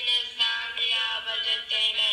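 Music with a singing voice holding long, steady notes that change pitch in steps.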